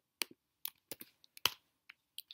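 Computer keyboard keys clicking: about seven short, separate keystrokes at irregular spacing.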